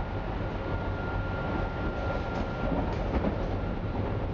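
Interior running noise of a Berlin U-Bahn F87 subway car in motion: a steady rolling rumble with a thin high-pitched tone that fades out about two-thirds in. A few light clicks of the wheels over the track come in the second half.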